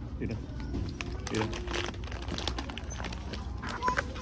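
Plastic snack packaging crinkling in short, scattered crackles as it is handled, with a brief bit of voice.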